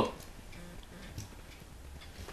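The tail of a loud shouted word at the very start, then a quiet room with a faint low hum and a few faint, irregular ticks.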